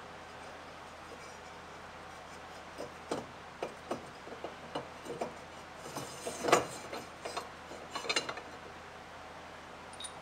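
Metal Minn Kota Talon mounting bracket knocking and clinking against the jack plate as it is fitted by hand. Scattered light knocks start about three seconds in, the loudest a little past the middle, over a steady low hum.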